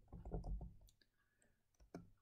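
A few faint keystrokes on a computer keyboard in the first second, then a single click near the end.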